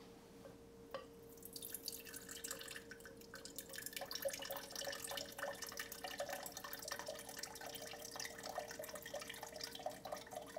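Vinegar poured from a bottle into a glass: a small click about a second in, then an irregular trickle and splash of liquid filling the glass from about a second and a half on.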